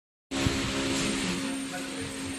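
Steady machinery hum with a constant low tone and hiss, starting just after the beginning, with a single knock about half a second in.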